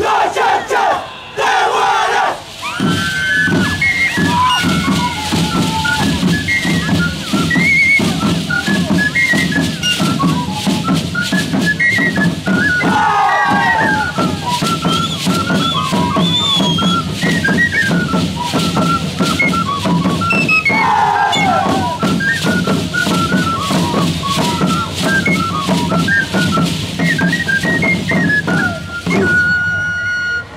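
Live Shacshas dance music: a high, quick flute melody of short hopping notes over steady drumming and rattling. A few loud shouts from the dancers come about two, thirteen and twenty-one seconds in.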